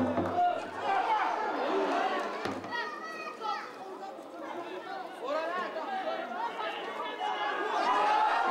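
Several voices shouting and calling over one another across a football pitch, players and onlookers at a match. The tail of a music track dies out in the first half-second.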